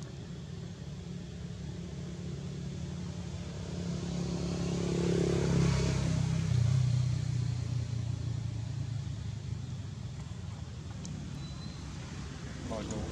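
A motor vehicle's engine passing by: a low hum that grows louder to a peak about six seconds in, then drops in pitch and fades away.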